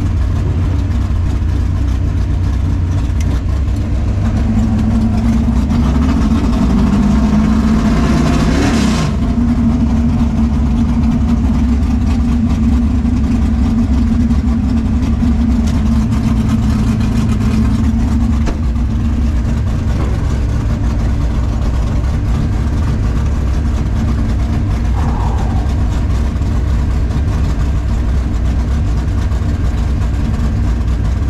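Drag-race car engine idling steadily, heard from inside the cabin of a 1964 Chevelle. About five seconds in a louder engine sound builds for several seconds and cuts off sharply near the nine-second mark, and the idle carries on after.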